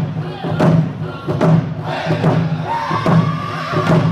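Round dance song: a group of men singing together while beating hand-held frame drums in unison, a steady stroke about every 0.8 seconds. A high held vocal note rises above the group about two and a half seconds in.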